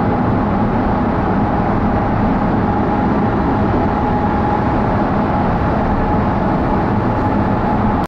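Steady road and engine noise heard inside a moving car's cabin as it drives through a highway tunnel, a dense even rumble with a faint steady whine above it.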